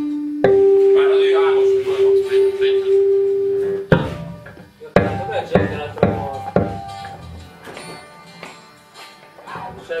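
Guitar playing: one note held for about three seconds, then a handful of separately struck notes that ring and die away.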